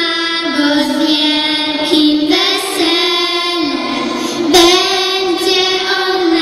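Young girls singing a Polish Christmas carol together into stage microphones, one melody line of held notes.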